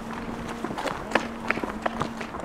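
Hurried footsteps running on tarmac: a quick, uneven series of footfalls, with a faint steady hum underneath.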